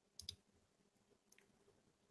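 Near silence broken by faint clicks: a quick pair about a quarter second in and a single one just past halfway.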